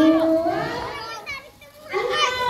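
Several children's voices calling out and chattering together as they play, with a high-pitched child's shout a little over a second in. The voices dip briefly quieter just before they pick up again near the end.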